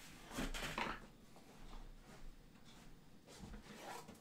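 Faint rustling and soft bumps of a person getting up from a desk chair and moving about a small room, with a louder rustle about half a second in.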